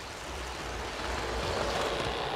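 Model train locomotive running along the layout track, a steady rumble that slowly grows louder.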